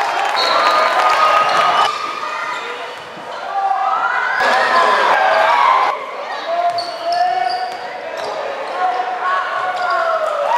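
Live basketball game sound in a gym: the ball bouncing on the hardwood court, sneakers squeaking in high chirps and glides, and voices from the crowd and bench.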